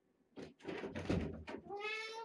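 A burst of shuffling, rustling noise, the loudest thing here, then a kitten meows once near the end, a single short high-pitched call.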